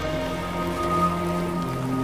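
A cast fishing net hits the water with a pattering, rain-like splash, over background music of sustained notes.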